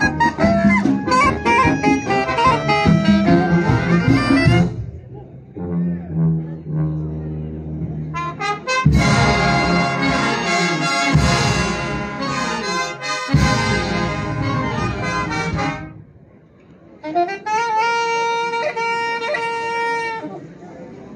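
A brass and saxophone band with trumpets and sousaphones plays live under a conductor. It moves from a busy passage to a quieter, lower stretch, then a loud full-band passage. After a brief break the band ends on a long held chord.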